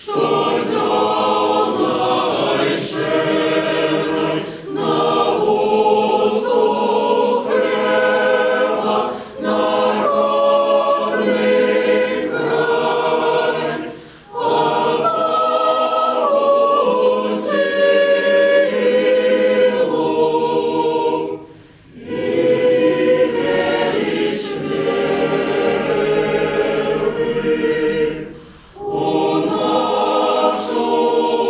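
Choir singing unaccompanied in a church, in several phrases separated by brief pauses.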